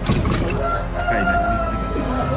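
A rooster crowing: one long, held call that starts about half a second in.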